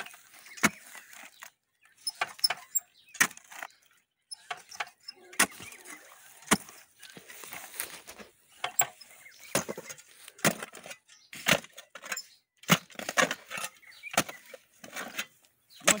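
Manual clamshell post-hole digger being driven into the ground again and again, its metal blades striking and clinking in stony soil while a fence-post hole is dug. Sharp, irregular strikes, roughly one or two a second.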